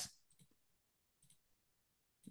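Near silence with two faint clicks, one about half a second in and one just past a second in, from a computer mouse.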